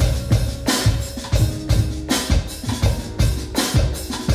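Drum kit beat played on an electronic drum kit along with a music track: a steady groove of kick and snare hits, about three a second, with cymbal strokes.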